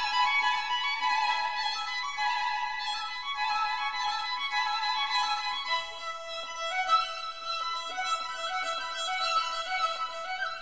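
Background music: a violin playing a melody of long held notes, moving to lower notes about six seconds in.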